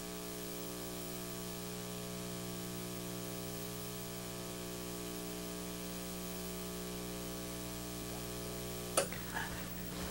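Steady electrical hum with hiss on an old recording's sound track, unchanging throughout, with a sharp click about nine seconds in.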